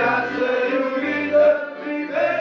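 A group of men singing a church song together in harmony, accompanied by an accordion whose bass notes sound in short, repeated beats underneath the voices.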